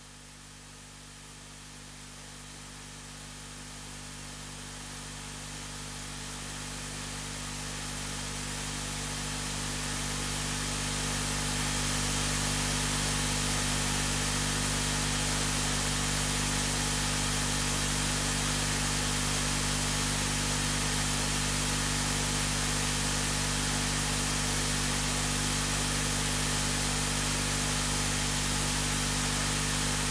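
Steady hiss with a low, steady hum under it, growing louder over the first dozen seconds and then holding level.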